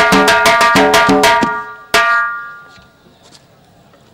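Fast, even drumming with a ringing tone that stops about one and a half seconds in, then one last stroke that rings out briefly. Faint background noise with a few small clicks follows.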